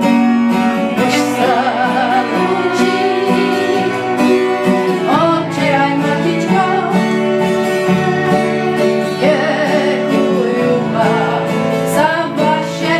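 A folk song played live: an acoustic guitar strummed in a steady rhythm and a fiddle, with a woman singing the melody.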